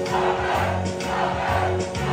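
Several voices singing together over music, with a low bass note repeating about every half second.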